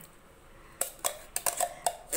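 An opened tin can of chilled cream knocking and clinking against a stainless steel bowl as it is tipped and shaken to empty it: about five light, sharp clinks starting near the end of the first second.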